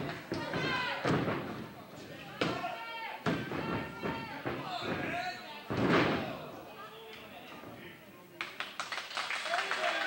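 Wrestlers' bodies slamming onto a wrestling ring's mat, several heavy thuds with the loudest about six seconds in, over shouting fans. Clapping starts near the end.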